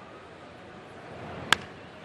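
A single sharp crack of a wooden baseball bat squarely hitting an 87 mph fastball, about one and a half seconds in, over low stadium crowd noise.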